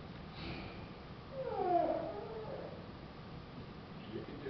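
A child's voice making one short wavering sound, about a second long, that slides down in pitch about a second and a half in, over a low room hum.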